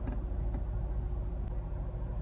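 Nissan Dualis engine idling steadily in Park at about 1,000 rpm, heard from inside the cabin as a low, even rumble.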